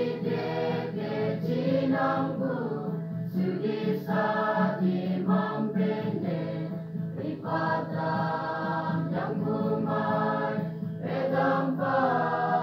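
A mixed church choir of men's and women's voices singing a Father's Day song in a local dialect, in held phrases that pause and start again every second or two.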